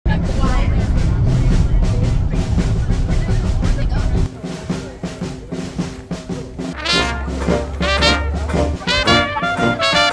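Brass band music: trumpets and trombone over a steady drum beat, heavy in the bass for the first few seconds, with the horns coming in strongly about seven seconds in.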